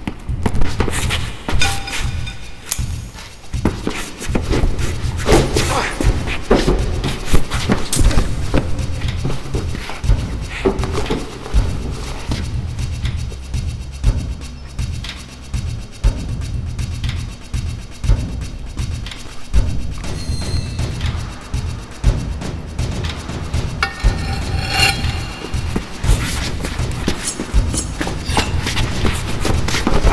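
Driving action-film score with a heavy bass pulse, punctuated by many sharp thuds and hits of a fistfight.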